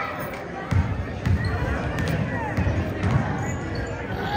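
A basketball dribbled on a hardwood gym floor, about six bounces at roughly two a second.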